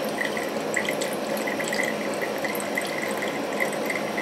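A brisk thin stream of distilled spirit running from the still column's take-off hose into a graduated measuring cylinder, a steady trickling with faint irregular drips. It is the middle (hearts) fraction, flowing at a take-off rate of roughly three litres an hour.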